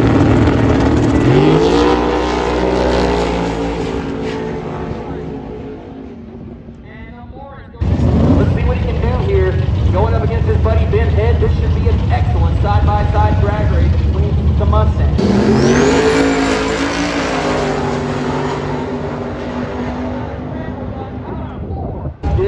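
Drag race cars launching off the starting line at full throttle, their engine note climbing as they pull away and fading down the track. After a break, cars sit running at the line, and a second pair launches about two-thirds of the way through, the rising engine note again fading into the distance.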